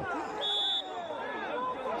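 A short, steady referee's whistle blast about half a second in, ruling out a goal for offside, over overlapping shouting voices.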